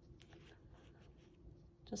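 Near silence, with faint scratching and a few small ticks from a nitrile-gloved finger spreading acrylic paint along the edge of a canvas.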